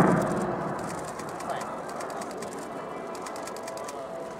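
F-15J fighter's twin turbofan engines, loud at first and fading fast over the first second as the jet climbs away; after that the jet is only faint under the background.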